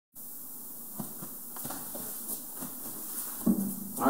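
Room hiss with a few soft knocks and handling sounds as someone moves about with an acoustic guitar. Near the end a louder bump sets a low guitar string ringing briefly.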